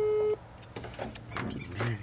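Telephone ringback tone from a smartphone held to the ear: a steady beep that cuts off about a third of a second in, the call ringing unanswered. Faint voices follow.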